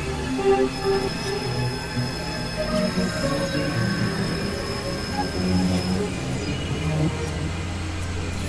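Experimental electronic drone music: layered synthesizer tones over a noisy bed. A thin high whistle holds from about one second in until about five and a half seconds, and a deep low hum falls away at the start and comes back in the second half.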